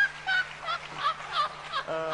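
A woman laughing hard on a TV studio recording, in high-pitched cackling hoots, about three a second.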